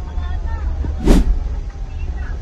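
Fire pumper's engine rumbling low and steady, heard from inside the cab, with voices around it. A short burst of noise, louder than the rest, comes about a second in.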